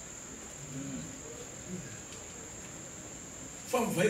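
A steady high-pitched whine runs throughout, with faint low voices in the room during the first couple of seconds.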